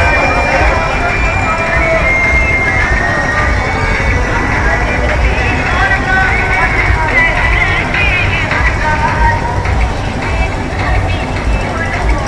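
Street procession din: a voice blaring through horn loudspeakers mounted on a vehicle, over the noise of a dense crowd and a constant low rumble.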